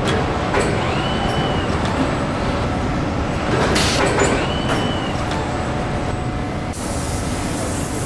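Car-body-shop production line noise: industrial robots working on a car body shell over a steady mechanical hum, with scattered clicks and two short whines. A burst of hiss comes about four seconds in, and the hiss grows steadier near the end.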